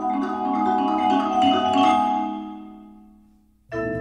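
Percussion sextet playing marimba and vibraphone in a repeating pattern that builds, then rings away almost to silence about three and a half seconds in. The full ensemble comes back in suddenly near the end, with deeper low notes added.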